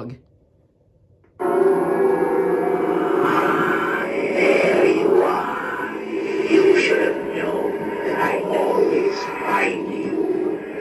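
Tekky Design Fogging Grim Reaper animatronic starting its routine about a second and a half in: loud, eerie music and sound effects with a voice-like moaning, played through the prop's built-in speaker.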